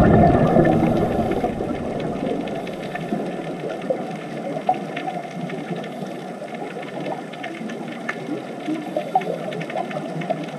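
Underwater ambience recorded near scuba divers. A loud low rumble of exhaled regulator bubbles fades away over the first two or three seconds. A steady watery hiss follows, with faint clicks and a few short squeaks.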